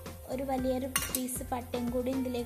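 Stainless steel bowl and spoon clinking against a steel pot as whole spices are tipped and scraped in, with a cluster of sharp metallic clinks about a second in.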